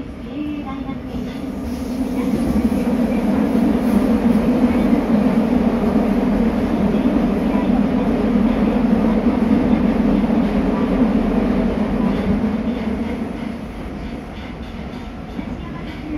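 Running noise inside a Nagoya Municipal Subway Higashiyama Line 5050-series car: a steady, dense rumble of wheels and motors. It grows louder about two seconds in, holds, and eases off a little near the end.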